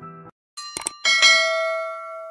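Subscribe-button animation sound effect: two short mouse clicks, then a bright notification-bell ding about a second in that rings and slowly fades. Music cuts off just before the clicks.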